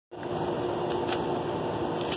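A steady mechanical hum with a faint steady tone in it, like a fan or air-conditioning unit running, with a few brief faint clicks.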